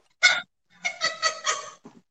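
A woman laughing: one short burst, then a quick run of about four laughs.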